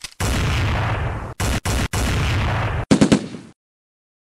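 Movie-style gunfire sound effect: sustained rapid automatic fire, broken twice by short gaps, then a few louder single shots about three seconds in before it cuts off.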